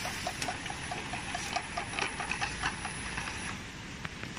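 Automatic wrap-around bottle labeling machine running: a rapid, regular mechanical ticking of about five ticks a second, with sharper clicks and a faint steady high whine. The ticking and whine stop shortly before the end.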